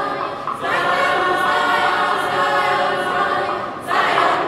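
Mixed school choir of boys and girls singing an Igbo song unaccompanied, holding long chords. The voices dip briefly about half a second in, and a new phrase comes in loudly just before the end.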